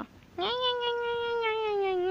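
Grey long-haired cat giving one long, drawn-out meow that holds a steady pitch and drops away at the end.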